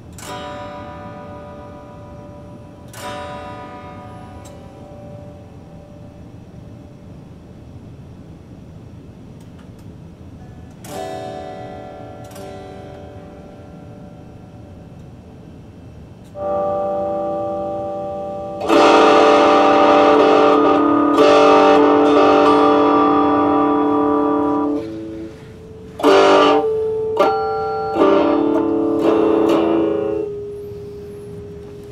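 Electric guitar through a small RockJam practice amp. Chords are struck and left to ring out three times. About halfway through comes a held chord, then a louder, brighter chord held for about six seconds, and near the end a few short chord stabs.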